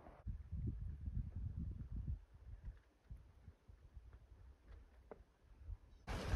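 Faint low rumble for about the first two seconds, then near silence with a few faint ticks.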